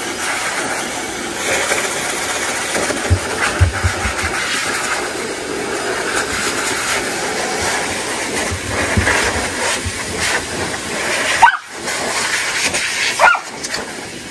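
Pet grooming blower (dog dryer) blowing air through its hose and nozzle onto a wet puppy's coat after a bath: a steady, loud hiss of rushing air, with two brief dips near the end.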